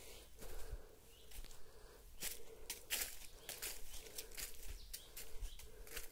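Footsteps through forest undergrowth: irregular crackles and rustles of dry leaf litter, twigs and brushed vegetation underfoot, over a faint steady drone.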